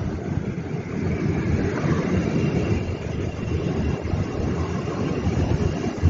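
Steady low outdoor rumble with a faint thin high tone running above it.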